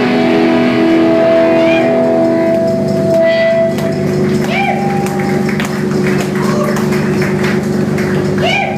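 A live drum-and-bass-guitar rock duo ends a song: the last notes ring on through the amplifier for about three and a half seconds, then die away. After that a steady amplifier hum remains, with scattered knocks and some voices.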